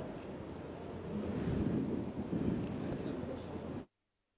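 Low, muffled rumbling noise like wind buffeting a microphone, from the soundtrack of an amateur handheld recording. It grows louder about a second in and cuts off abruptly just before the end.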